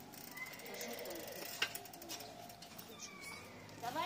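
Birds chirping in the trees over quiet street ambience, with a single sharp click about one and a half seconds in.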